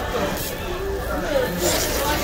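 Indistinct voices: speech that the recogniser did not write down, over a steady background of room noise.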